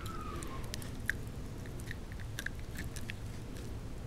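Shiba Inu puppy chewing and biting on a dried beef tendon, a quick irregular series of sharp crunching clicks as her teeth work the tough end.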